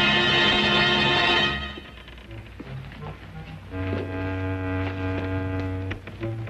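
Suspense background music from a TV drama score: a loud held chord that breaks off about a second and a half in, a few quiet low notes, then another held chord.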